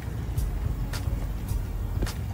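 Footsteps on a dirt bank, about two a second, over a steady low rumble on the microphone.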